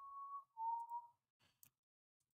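A person whistling two short notes, the second a little lower than the first, followed by a faint click.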